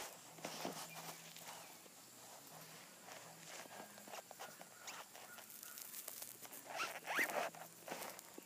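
A squirrel gnawing and chewing a piece of apple: faint scattered crunchy clicks, with a louder cluster about seven seconds in.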